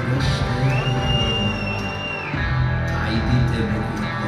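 Live band playing, with drums and electric bass and a high note held for about a second and a half near the start.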